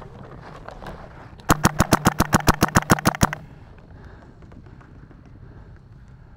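Paintball marker firing close by in a fast string of about sixteen shots, roughly nine a second. The string starts about a second and a half in and lasts nearly two seconds.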